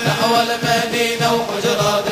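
Male voices singing a Sufi inshad, an Arabic devotional chant, with long melismatic held notes over a steady low beat.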